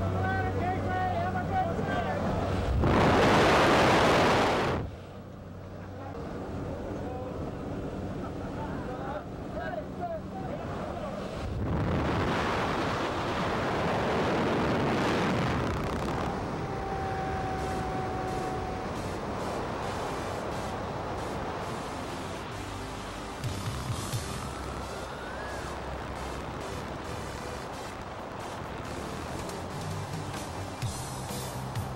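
Jump plane's engine droning steadily at the open door, then a loud rush of wind lasting about two seconds as the tandem pair exits. Wind noise carries on after it and swells again for a few seconds later on.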